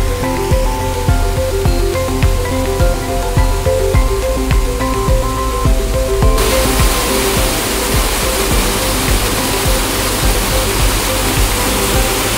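Background music with stepping notes and a bass line. About six seconds in, the steady rushing of water pouring down a bell-mouth intake in a reservoir comes in abruptly and covers the music.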